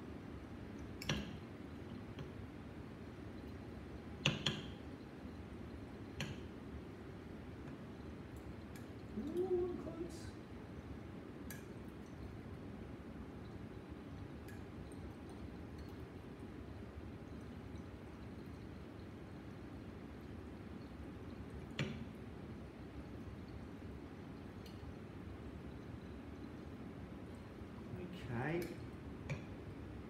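Faint steady room hum with a few scattered light clicks and clinks of laboratory glassware, as a conical flask and the burette's stopcock are handled during a slow titration near its endpoint.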